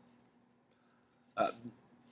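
Near silence for over a second, then a man's short "uh" hesitation sound, followed by a faint click.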